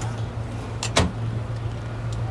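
A stainless-steel-fronted storage drawer in a boat's console being worked, with two sharp clicks close together about a second in as it shuts or latches, over a steady low hum.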